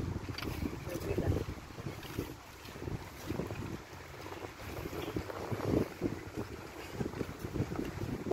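Wind buffeting a phone microphone outdoors, an uneven low rumble, with irregular low thumps from movement along a dirt path.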